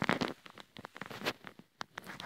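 Irregular rustling and crackling with scattered sharp clicks, loudest at the very start, and one sharp click near the end.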